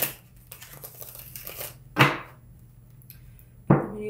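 Tarot cards being handled and shuffled on a table, with faint papery rustling and two sharp knocks, one about halfway through and one near the end, as the deck or a card meets the tabletop.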